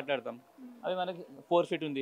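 A man speaking, with a short pause about half a second in before he carries on.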